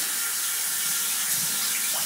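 Tap water running steadily into a bathroom sink, an even hiss that stops abruptly near the end, as between passes of a wet shave.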